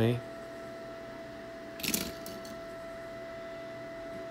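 Small die-cast toy vehicles clattering: a brief cluster of sharp clicks about two seconds in, as a toy truck is moved among other model cars.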